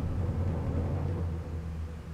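A deep, steady low rumbling drone from a TV drama's soundtrack, easing off a little near the end.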